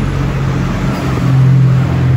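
A motor vehicle's engine running close by on the street, a low hum that swells and rises slightly in pitch about a second in.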